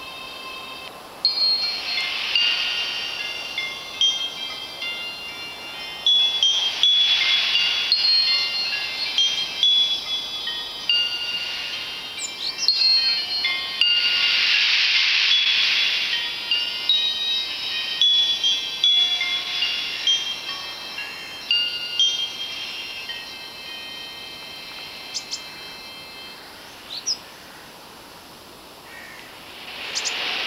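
Metal chimes ringing in irregular clusters of high, overlapping bell-like tones. Each cluster is struck and then fades, and the ringing thins out in the last several seconds. A few faint bird chirps come through about halfway and near the end.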